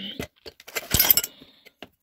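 Small metal hardware (door hinges and steel brackets) clinking and rattling in a wooden box as it is rummaged through by hand: a few sharp clinks, busiest about a second in.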